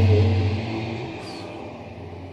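Aircraft passing overhead: a steady low drone that fades away over the first second or so.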